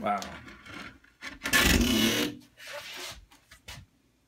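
A man's voice exclaiming "Wow" in admiration, followed about a second and a half later by a short, breathy laugh.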